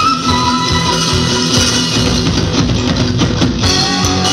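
A live rock band playing an instrumental passage with no vocals: electric guitar over drums, with held notes and a run of crisp drum and cymbal hits in the second half.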